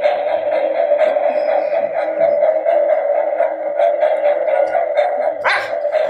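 Electronic buzzer of a toy shock-style lie detector sounding one steady, unbroken tone: the machine's signal that the answer was a lie. A short sharp sound cuts in near the end.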